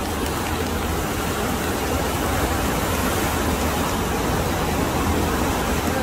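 Steady rushing of the FlowRider wave machine's pumped sheet of water flowing fast over its padded wave surface.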